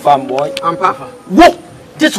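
A man's voice.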